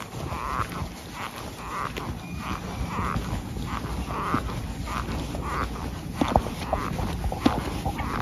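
Black leather electrician's safety boots (VanVien Omega) creaking with each step on concrete, a short croak about twice a second like 'rat, rat, rat', which he likens to a frog. He takes it for the leather flexing and stretching as he walks, and thinks it normal.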